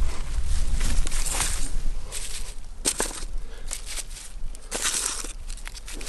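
Dry straw mulch rustling and crackling under hands as garlic cloves are set into the bed, with irregular sharp crackles.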